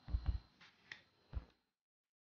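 A metal spoon knocking and clicking against a plastic tub while scooping fruit salad. There are four short knocks: two close together at the start, a sharper click about a second in, and one more shortly after.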